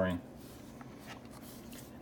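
Faint handling sounds of a Parker Jotter rollerball, with light scrapes and a few small clicks as its metal refill is drawn out of the plastic barrel.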